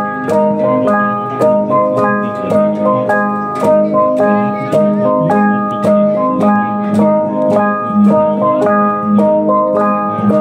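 A Jrai ensemble of hand-held bossed bronze gongs struck with mallets, each gong ringing its own pitch in an interlocking, repeating pattern of several strikes a second, over a steady low ring from the larger gongs.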